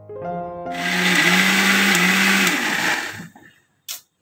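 Electric mixer grinder running with liquid in its jar, then stopping a little after three seconds in. A single sharp click follows near the end as the speed knob is turned.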